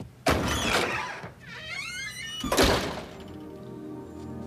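A door opens and bangs shut with a thunk, with a brief squeak in between. Background music starts near the end.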